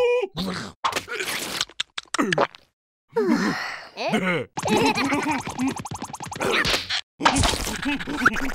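Cartoon larva characters' wordless vocal sounds and effects: a noodle slurped in with a run of short smacks and clicks, a brief gap, then both larvae laughing in quick repeated pulses for several seconds.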